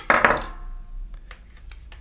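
Aluminium servo-block parts knocked together as the assembly is handled: one sharp metallic clink at the start that rings briefly and fades within about half a second, followed by a few faint clicks.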